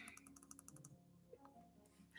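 Near silence with a faint, rapid run of about a dozen small clicks in the first second, from a computer mouse scroll wheel being turned.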